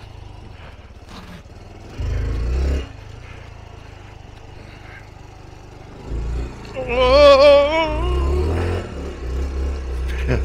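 Honda Trail 125's single-cylinder four-stroke engine running at low speed, picking up briefly about two seconds in and again from about six seconds on. Near the middle of that second stretch a person lets out a long wavering whoop.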